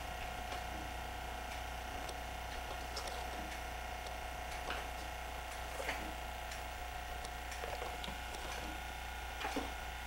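A steady hum of several fixed tones throughout, broken by a handful of faint short sounds, the clearest about six seconds in and twice near the end.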